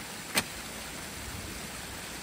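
Water rushing steadily through a breach in a beaver dam, with one sharp knock about half a second in.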